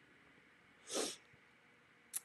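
A single short breath noise from a person, about a second in, in otherwise near silence.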